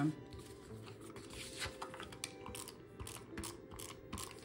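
Paper and sticker sheets being handled and slid across a cutting mat: scattered light taps and rustles.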